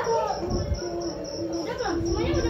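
Crickets chirping in a steady high pulse, about six chirps a second, over a low steady drone.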